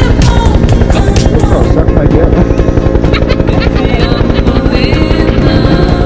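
Helicopter coming in to land close by, its rotor throbbing loudly in a rapid, even beat.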